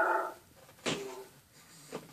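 A dog whining in short pitched calls, with a sharp click-like sound about a second in.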